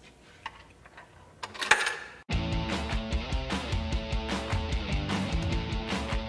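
A coin dropping into a coin acceptor, a short metallic rattle about a second and a half in. Then rock music with guitar starts suddenly a little after two seconds and carries on with a steady beat.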